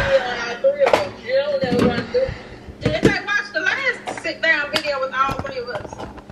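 Indistinct voices talking, with a few sharp knocks from something handled: one at the start, one about a second in and one about three seconds in.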